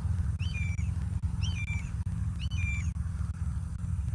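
A bird calls three times, about a second apart, each call short and high-pitched, over a steady low rumble.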